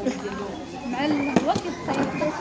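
Background chatter of voices, children's among them, with a single sharp click about one and a half seconds in.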